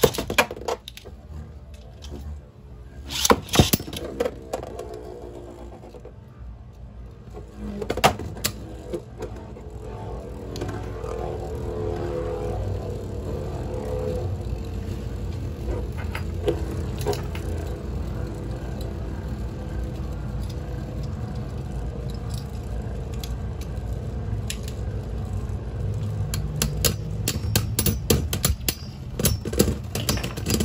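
Beyblade Burst spinning tops whirring in a plastic stadium. Sharp clicks of the tops striking each other and the stadium wall come in the first few seconds and again about eight seconds in. A dense run of rapid clicks near the end comes as the tops clash and one wobbles down.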